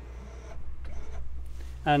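Electric drop-down bed's motor running with a steady low hum as the bed lowers, stopping near the end.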